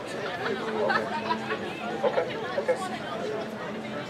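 Crowd chatter: several people talking over one another, no single voice clear enough to follow.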